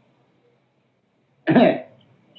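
A man coughs once near the end, a short burst after a quiet pause.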